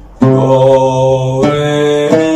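A man's voice singing long held notes of a maqam Saba phrase. The pitch steps to a new note about a second and a half in.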